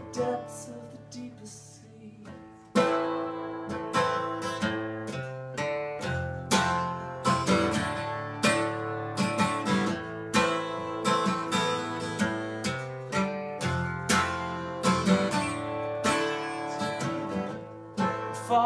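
Acoustic guitar strummed in an instrumental break: softer for the first couple of seconds, then steady, louder rhythmic strumming of chords.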